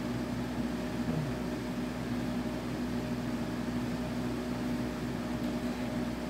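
A steady mechanical hum with a constant low droning tone and an even hiss under it, unchanging throughout.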